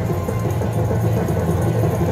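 Slot machine win-celebration music, a busy, loud, rhythmic jingle signalling a win on a Lock It Link Diamonds machine.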